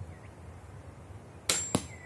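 Small wooden-framed torsion ballista shooting: two sharp snaps about a quarter of a second apart near the end, with a faint brief ring after.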